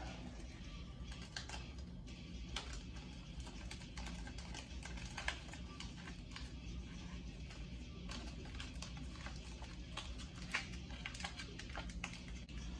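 Faint scattered clicks and rustles of masking tape being torn and pressed into the groove of a hard plastic steering wheel rim, over a low steady hum.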